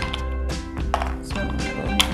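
Background music with a steady tone, with a few light clicks as small coloured stones are picked from a plastic tray.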